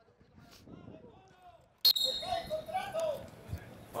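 Players' voices on a small-sided football pitch, faint at first. About two seconds in comes a sudden sharp knock, and then louder shouting.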